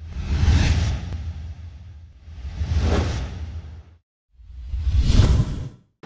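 Whoosh transition sound effects over heavy low bass: three swells, one about every two seconds, each rising and fading away, with a brief dead silence just after four seconds.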